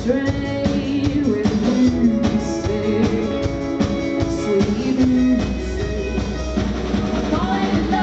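Live rock band playing, with a woman singing lead over drum kit and electric bass. A low bass note is held from about five seconds in until near the end.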